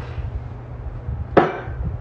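A glass liquor bottle set down on a shelf: a single sharp knock about one and a half seconds in, over a low steady room hum.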